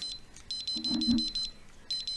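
CelloEYE 24Gs RF detector's speaker beeping in rapid, high-pitched pulses, about ten a second, in two runs. The detector is sensing radio-frequency radiation above its threshold.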